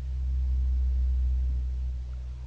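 A low, steady rumble that swells early, holds, and eases off slightly near the end.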